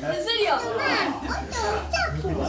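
Children's voices: several kids talking and calling out over one another.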